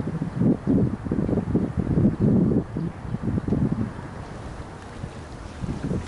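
Wind buffeting the microphone in irregular gusts for about four seconds, then one shorter gust near the end.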